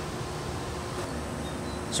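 Steady outdoor background noise with a faint continuous hum and a low rumble; no axe throw or impact is heard.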